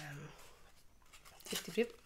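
Small cardboard box being handled and opened: faint paper rustling and scraping, with short murmurs of a voice at the start and near the end.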